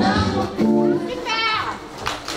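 Dance music with children's voices calling out over it, including a high falling call near the end.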